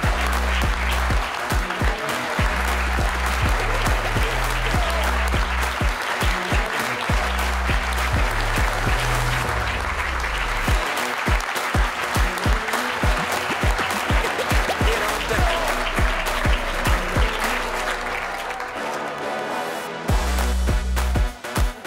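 Audience applauding steadily over loud music with a heavy bass beat; about halfway through, the bass gives way to a run of evenly spaced kick-drum thumps.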